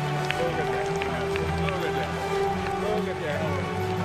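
Speech over background music, from the wrestling broadcast being streamed, with a few faint clicks in the first two seconds.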